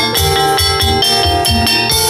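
An oklik street ensemble playing an instrumental: a pitched melody over a steady beat of marching tom drums and cymbals, the low drum strokes coming about three a second.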